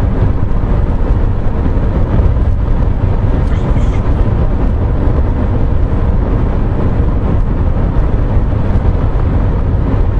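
Steady low road and engine rumble of a Mercedes-Benz car driving at speed, heard from inside the cabin.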